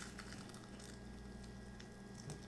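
Faint, soft chewing and mouth clicks from eating fried chicken close to the microphone, over a low steady hum.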